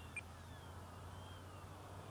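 Faint whine of the FlightLineRC F7F-3 Tigercat's twin electric motors and propellers as the model rolls down the road, the pitch sliding down and back up with the throttle. A short high beep sounds about a fifth of a second in.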